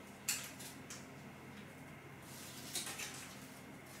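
Hands handling a wooden block and the paper backing of an adhesive tape pad. There is a sharp tap about a third of a second in, a few light ticks, then a brief papery rustle near three seconds.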